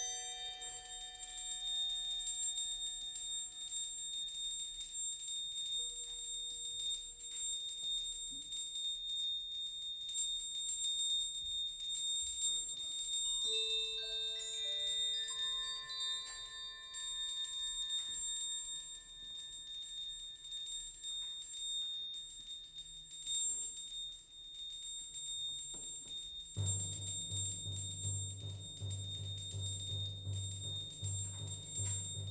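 Slow, sparse contemporary music for percussion ensemble: single bell-like metal percussion notes, struck one at a time and left to ring, over a steady high ringing tone. Near the end a low, pulsing drone comes in underneath.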